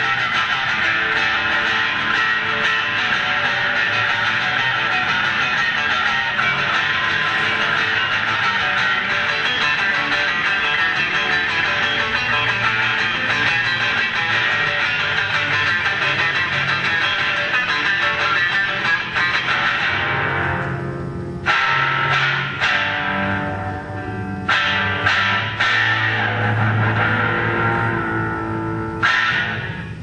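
Rock band playing electric guitar and bass guitar, a dense, loud wall of sound. About twenty seconds in it thins out into a sparser passage broken by sudden stops and fresh chord hits, the last one near the end.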